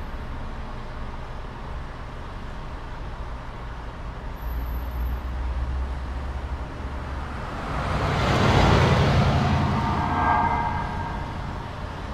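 Low steady rumble, then a vehicle passing close by: its noise swells to a peak about nine seconds in and fades away over the next two seconds.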